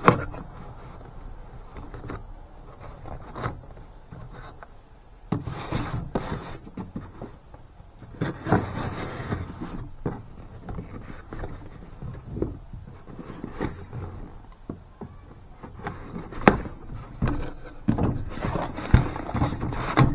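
Knife cutting packing tape on a cardboard box, then the cardboard flaps being pulled open: irregular scraping and rubbing with a few sharp knocks, one right at the start and a couple near the end.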